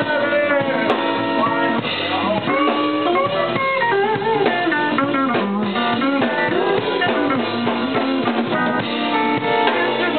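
Live blues band: an electric guitar plays a lead line full of bent notes over drum kit and bass guitar.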